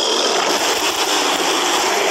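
Film-trailer sound effects: a loud, steady rushing roar with no voices in it.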